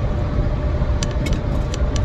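Steady low rumble of a car driving, heard from inside the cabin: engine and road noise with a faint steady hum, and a few light clicks about halfway through.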